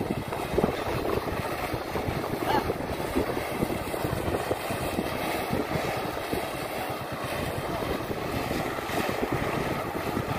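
An old tyre being dragged over a concrete road by a yoked pair of Ongole bulls in tyre-pulling training: a continuous rough scraping rumble.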